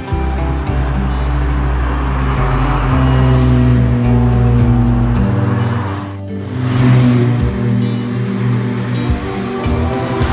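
Cars driving past on a road, their tyre and engine noise swelling and fading, with one passing about three seconds in and a closer, louder one about seven seconds in. Background music plays throughout.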